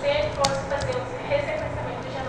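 A woman lecturing, her voice carrying in a classroom, with a sharp keystroke about half a second in and a few lighter clicks from typing on a computer keyboard.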